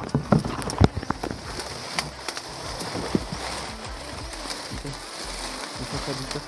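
Dry leaves and fern fronds crackling and rustling as someone pushes through undergrowth, with sharp crackles in the first second, then a steady hiss.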